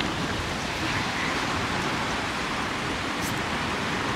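Steady rushing outdoor noise with no voices and no distinct knocks or strokes.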